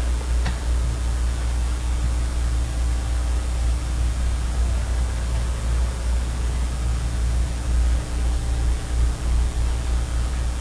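Steady low hum with an even hiss and a thin steady tone above it: the background noise of a lecture-hall recording. One faint click comes about half a second in.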